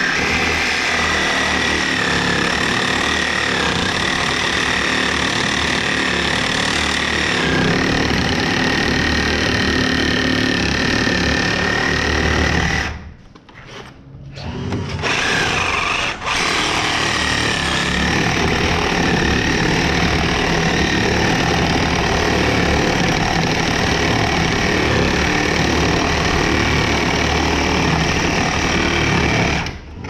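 Cordless power tool running with a steady motor whine against wood framing; it stops for about two seconds partway through, then runs on again until just before the end.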